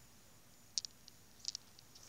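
Faint rustle of chilli plant leaves brushed by a hand: two short crisp rustles, one just under a second in and one about a second and a half in.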